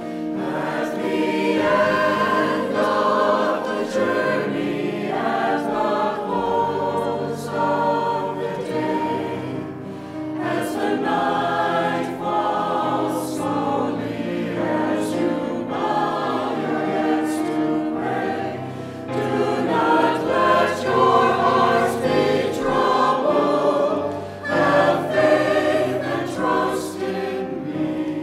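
Mixed church choir of men and women singing a sacred choral anthem in long sustained phrases, with short breaks about ten and twenty-four seconds in.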